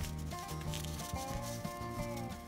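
Background music, with the dry rubbing rustle of a sheet of paper being pressed and creased by fingers.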